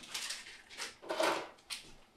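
Items being taken out of a bedside table drawer: a few short scraping and knocking noises as the drawer is handled and its contents moved.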